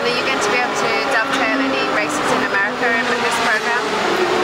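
Speech: a person talking, over a steady background hum.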